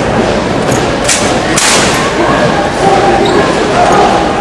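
Crowd chatter in a large hall, with a couple of sharp thuds about a second and a half in from a drill rifle being caught and handled during a solo exhibition routine.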